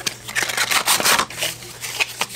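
Cardboard packaging being handled: a run of short scrapes and rustles as an inner box is slid out of its sleeve.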